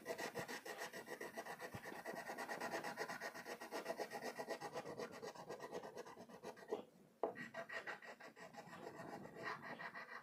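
Red crayon rubbing on paper in quick back-and-forth colouring strokes, several a second, pausing briefly about seven seconds in before going on.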